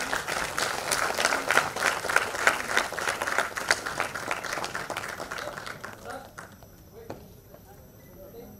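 Audience applauding: many hands clapping, swelling quickly, then dying away about six seconds in.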